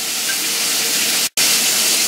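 Butter and hot sauce sizzling and bubbling in a pan as fried chicken wings are tipped in: a steady hiss that cuts out for an instant about a second in, then carries on a little brighter.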